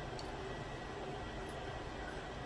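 Steady low background hiss and hum of a room, with a couple of faint small clicks.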